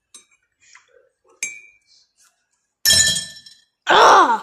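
A metal teaspoon clinking against a ceramic mug of milk tea: a few light taps, a sharp ringing clink about a second and a half in, then a much louder clatter with ringing about three seconds in.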